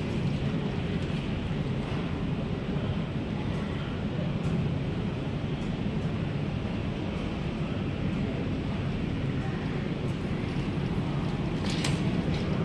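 Steady store background noise, an even low hum with a faint din of distant voices.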